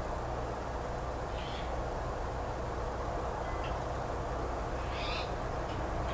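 Steady background noise with a low hum, broken by a few short, high chirps about a second and a half apart.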